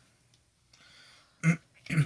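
Mostly near silence while a plastic soda bottle's cap is twisted, with a faint brief hiss near the middle, then one short throat sound about a second and a half in.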